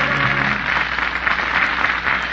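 The last held chord of a song cuts off just over half a second in, and audience applause follows.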